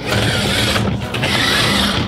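Roborock S50 robot vacuum being turned round by hand on a table: its body and wheels rub and roll against the surface in a dense scraping noise, with a brief dip just before the one-second mark.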